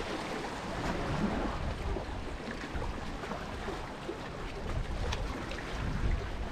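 Small sea waves washing and lapping against the rocks of a stone jetty, a steady noisy wash.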